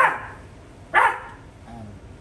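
A dog barking twice, two short sharp barks about a second apart.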